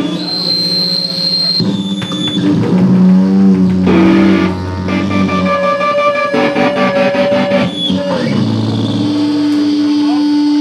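Electric guitar played loud through an amplifier, holding long sustained notes that change pitch every second or so, with a thin high whine in the first second and a half.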